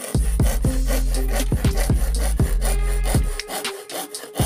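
Handsaw cutting thin plywood in repeated back-and-forth strokes, with background music playing under it.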